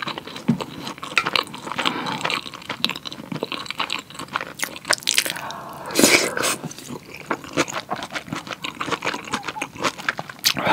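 Close-miked chewing of a mouthful of pork kimchi stew, full of small wet clicks and crackles, with one louder, longer mouth sound about six seconds in.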